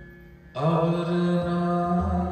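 Gurbani kirtan: a harmonium sounding softly, then about half a second in a man's voice enters loudly with a short upward glide into a long held note over the harmonium.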